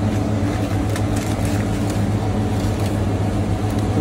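A steady low hum from a running electric motor, with a light hiss over it and a few faint clicks of handling in the first half.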